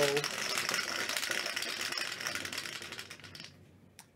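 Two dice rattling and tumbling inside a clear plastic dice dome. The rattle fades as the dice settle and stops about three and a half seconds in, landing on a five and a four.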